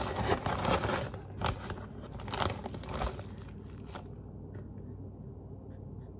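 Plastic bag of brown sugar crinkling and rustling as a hand scoops sugar out of it: a run of crackles for the first two or three seconds, then only faint scratches.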